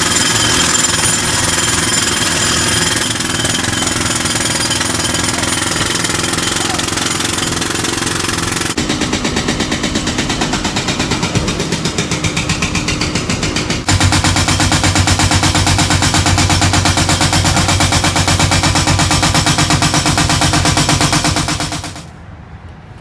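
Heavy diesel work machine running loud with a fast, even rattling pulse. The sound shifts abruptly about nine seconds in and again about fourteen seconds in, with a stronger low hum in the last stretch, and it stops at the end.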